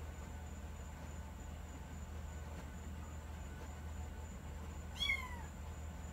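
A kitten gives one short, high-pitched meow that falls in pitch, about five seconds in.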